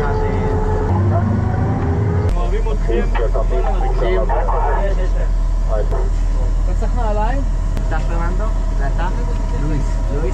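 Several men talking and calling out over the steady low drone of a vehicle engine, with a change in the sound about two seconds in.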